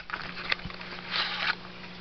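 Handling of a small cardboard trading-card box and its cards: a soft click, a light knock, then a short papery rustle about a second in.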